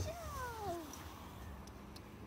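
A sharp knock right at the start, like a hoof set down on a wooden pedestal box. It is followed by a single falling, mewing animal call of under a second, like a cat's meow, that drops steadily in pitch.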